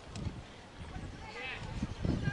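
Faint, distant shouted calls of players across an outdoor hockey pitch, one clearer call about a second and a half in, over a low rumble.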